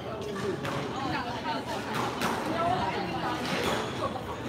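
Indistinct voices talking in a large echoing hall, with a few sharp knocks of a squash ball near the end as play starts.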